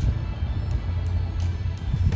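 Background music with a steady, loud low bass rumble and no speech.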